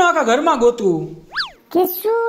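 A cartoon-style comedy sound effect: one quick whistle-like glide that shoots up in pitch and drops straight back, about a second and a half in, after a brief bit of voice.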